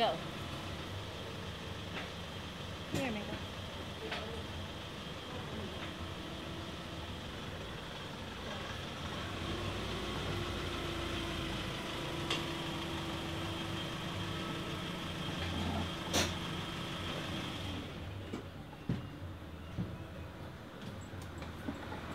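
A pickup truck pulling in and running with a steady hum, its engine stopping about three-quarters of the way through. A sharp click and then a few short knocks follow as the door is opened.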